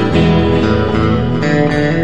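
Guitar playing sustained chords in an instrumental passage between sung lines, with a new chord struck about a second and a half in.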